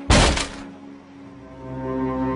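A single loud, heavy thud right at the start, dying away within half a second. Sad, sustained string music then swells underneath.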